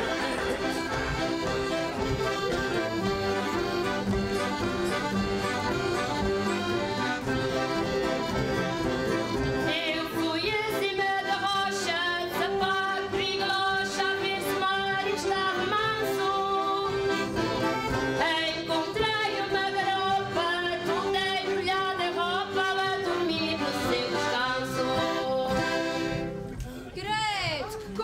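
A song: instrumental backing with women singing over it, the singing coming in about ten seconds in; the music drops away shortly before the end.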